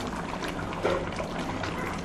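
Thick chicken gravy bubbling and popping as it simmers in a nonstick pan, with a spatula stirring through it.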